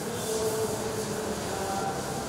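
Blackboard duster rubbing across a chalkboard, a steady hissing scrape as chalk writing is wiped off.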